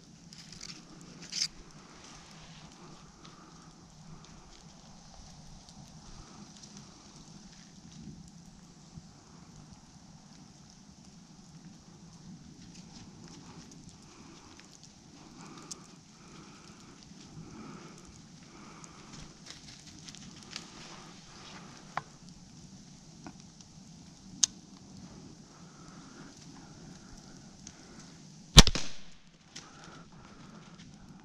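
Quiet woods with a few faint clicks, then near the end a single loud, sharp crack of a bow being shot, dying away within about half a second. The arrow hits a doe.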